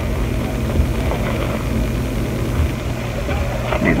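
A steady low hum with a constant background hiss, unchanging throughout.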